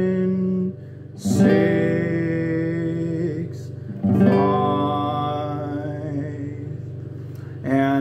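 Nylon-string classical guitar strummed twice on a G chord, the melody note stepping down between the strums. Each chord rings out for a few seconds.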